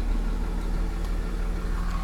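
Car engine running at low revs, heard from inside the cabin as a steady low hum.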